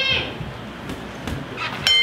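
A boxing ring bell struck once near the end, ringing on with a steady, bright tone: the signal to start the round.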